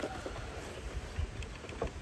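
Cardboard and plastic packaging being handled, with a few faint ticks and rustles as a plastic clamshell is drawn out of a cardboard box, over a low steady rumble.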